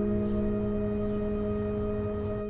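Background film score: an ambient drone of held, unchanging tones with a bell-like ring.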